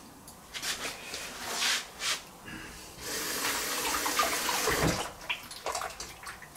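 Rustling and handling noises, then about three seconds in a steady run of liquid pouring or splashing for about two seconds, as if emptied from a plastic bag into a steel bowl.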